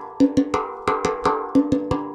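Instrumental music: a steady rhythmic pattern of struck, pitched percussion notes, about five strokes a second, each ringing briefly before the next.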